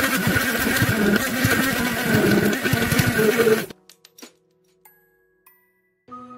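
Hand-held immersion blender running, mixing a smoothie of oat drink, banana and powders in a jug, with a steady motor whine; it cuts off suddenly a little over halfway through. A few faint clicks follow.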